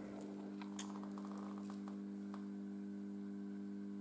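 A quiet steady hum of several tones that holds level throughout, with a couple of faint light clicks about a second and two seconds in.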